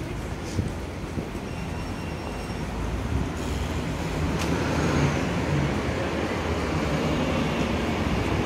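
An articulated city bus drives slowly past close by, its engine and tyres swelling from about three seconds in and staying loud, over steady street traffic noise.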